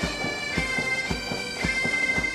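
Pipe band playing a march: bagpipes sounding a steady drone under the melody, with a regular drumbeat.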